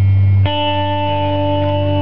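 Live music between sung lines: guitar playing, with a new chord struck about half a second in and left to ring.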